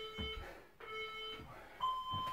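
Electronic interval timer beeping the countdown at the end of a work interval: short low beeps about once a second, then a longer, higher beep near the end that marks the switch to the next exercise. A soft low thud sounds between the beeps.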